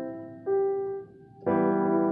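Piano playing a slow introduction: held chords fade, a single note sounds about half a second in, there is a short lull, then a full new chord is struck near the end.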